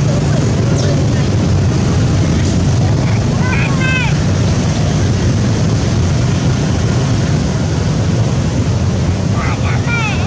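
Steady, loud low rumble throughout, with two brief runs of short, high, squeaky calls: one about four seconds in and one near the end.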